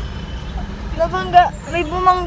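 Steady low rumble of road and engine noise inside a car's cabin, with a woman's voice starting to speak about a second in.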